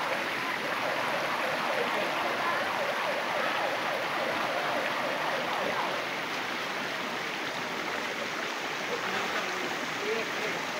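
Steady rush of a shallow rocky stream flowing over boulders.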